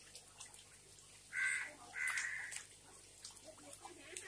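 A bird calls twice in harsh calls, the second a little longer, about a second and two seconds in. Underneath, faint splashing and dripping of water in an aerated fish tank.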